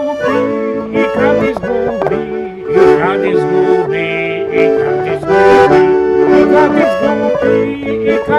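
Dallapè piano accordion playing an instrumental passage of a folk song: held chords and melody notes over a moving bass.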